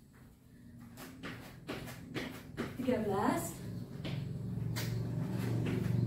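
Trainers landing and scuffing on an exercise mat over a tiled floor during skater hops and jumping jacks: a run of short thuds and knocks, with a brief bit of a woman's voice about halfway through. A steady low hum builds in the second half.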